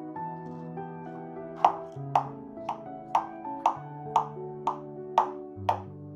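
A metal utensil cutting into a crisp, cheese-topped potato bake in a glass dish: sharp crunching clicks about twice a second, starting about a second and a half in, over soft background music.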